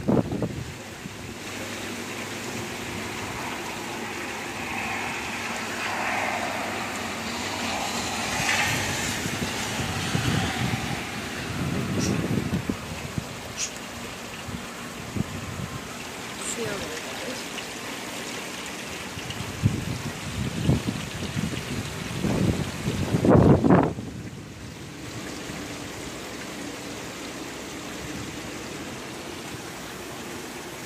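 Heavy rain pouring steadily, with water running off. Gusts of wind hit the microphone now and then, the loudest a little before three-quarters of the way through.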